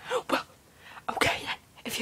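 A girl's voice: two short vocal sounds, then about a second in a loud, breathy, sneeze-like burst right up against the microphone that lasts close to a second.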